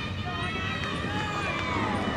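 Indistinct voices of players calling out across an open cricket field, over a steady low background rumble.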